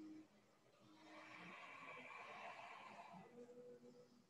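Near silence: faint soft background music with held low notes, and a soft hiss lasting about two seconds in the middle.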